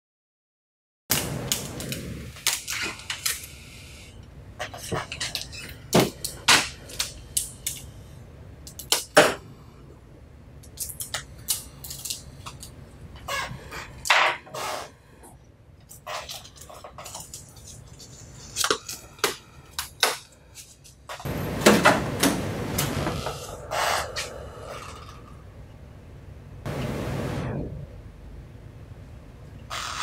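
Hands stripping shipping tape and plastic transport clips off a wide-format inkjet printer: scattered clicks and knocks of plastic parts with rustling between them. There are longer tearing pulls about 21 and 27 seconds in.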